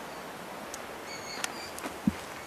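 Steady outdoor background hiss with a few short, high bird chirps a little past a second in, and a few faint clicks.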